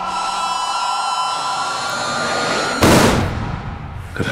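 A steady ringing tone of several high pitches held for nearly three seconds, then cut by a single loud bang that dies away over about a second: trailer sound design.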